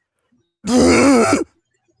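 A person's voice making one wordless sound just under a second long about halfway through, its pitch wavering.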